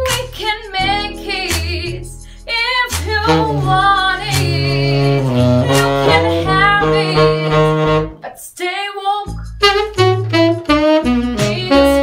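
Saxophone playing a melodic line with a woman singing over a backing track with a bass line. The music drops out briefly about eight seconds in, then carries on.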